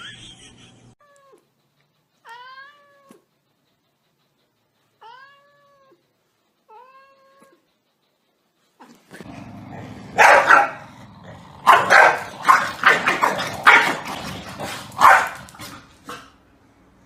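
A cat meowing four times in short calls that rise and fall in pitch, with pauses between them. About nine seconds in, a run of about a dozen loud, harsh, noisy bursts follows.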